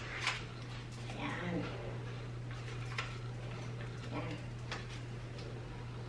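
Faint clicks and handling noise as a camera is settled on a Digipod TR462 tripod's pan head, over a steady low hum, with a few soft murmurs.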